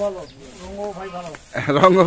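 A man talking in Bengali, some syllables drawn out, getting louder near the end.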